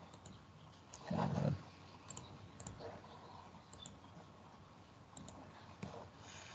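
A few faint, scattered computer mouse clicks. About a second in there is one brief, louder muffled sound.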